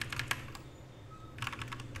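Typing on a computer keyboard: a quick run of keystrokes, a pause, then another short run of keystrokes after about a second and a half.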